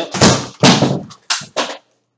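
A computer loudspeaker falling and knocking against the desk: four loud knocks and clatters within about a second and a half, the first two longest, then the sound cuts off abruptly.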